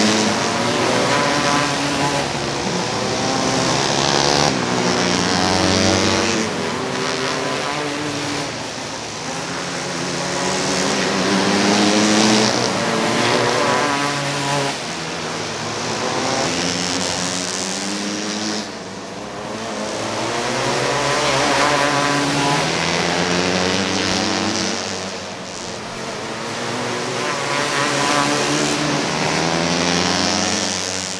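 Several winged outlaw karts racing on a dirt oval, their engines rising and falling in pitch as they rev on and off through the turns. The sound swells and fades every few seconds as the pack comes past, lap after lap.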